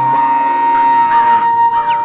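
Bansuri (transverse bamboo flute) holding one long, steady note over a soft backing of sustained chords, in a song's instrumental intro.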